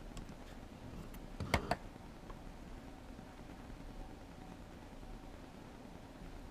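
Quiet room tone with a quick cluster of two or three sharp clicks about a second and a half in.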